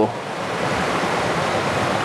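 Steady rushing of a creek's running water: an even hiss with no breaks or strokes.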